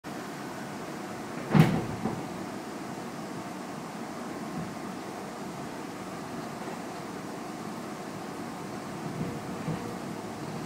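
Steady hum inside a stopped commuter train car, with a single sharp thud about one and a half seconds in and a smaller knock just after it, and a few faint bumps near the end.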